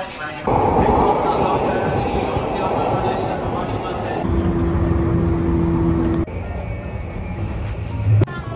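JR Yokosuka Line commuter train running along the platform: a loud rush of the cars going past, then a steady two-note hum as it keeps moving. About six seconds in, the sound cuts to a quieter rumble inside the carriage.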